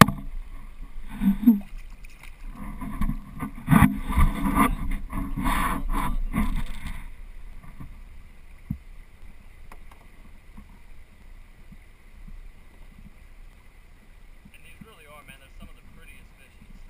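Hooked spotted bass splashing and thrashing at the water's surface beside a kayak as it is landed, in loud irregular bursts for about the first seven seconds. After that, quieter moving river water with a faint steady high tone.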